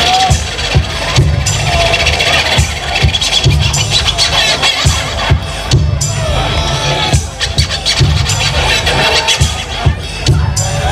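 Live hip hop beat played loud through a club PA, with heavy bass and drum hits, and a DJ scratching records on a turntable over it.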